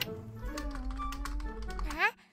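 Rapid clicking of keys being typed on a laptop keyboard, a cartoon sound effect, over soft background music, with a single sharper click right at the start as the laptop is opened.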